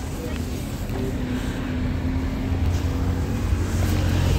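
A road vehicle's engine rumbling nearby, getting louder from about halfway through, with a steady hum in the first part.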